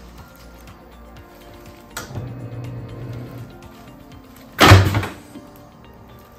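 A chiropractic table's pelvic drop section thuds down once under a hip-adjustment thrust, about three-quarters of the way through. It is a single loud, sudden knock with a short low ring, and a faint click comes a couple of seconds before it.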